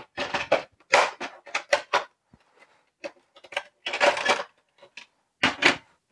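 Rigid clear plastic blister packaging crackling and plastic parts clicking and knocking as a plastic rod holder is taken out of its pack and set on a plastic tackle box lid. The crackles and knocks are irregular, with a quieter stretch about halfway through.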